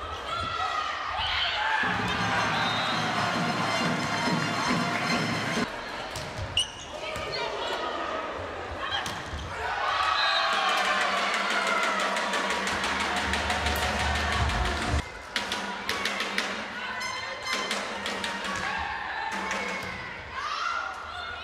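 Crowd in a packed indoor sports hall cheering, shouting and chanting, with sharp smacks of a volleyball being struck during rallies. Music plays in the hall through part of it.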